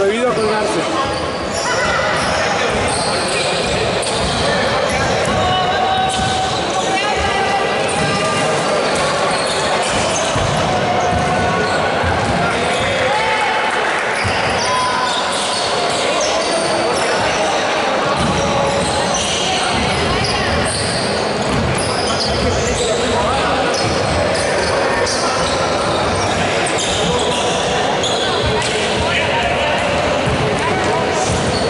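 Gymnasium hubbub: many people talking at once, echoing in the hall, with a basketball bouncing on the wooden court now and then.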